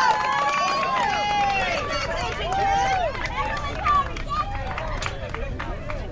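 Many young voices calling out and cheering over one another at a youth softball game, drawn-out high calls with no clear words, growing fainter toward the end.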